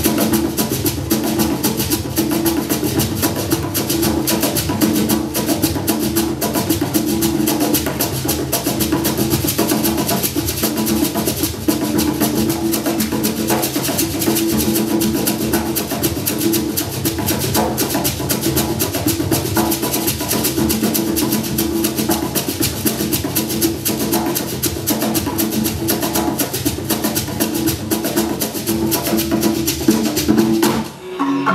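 Live African dance music: hand drums playing a fast, busy rhythm over steady, sustained low pitched notes.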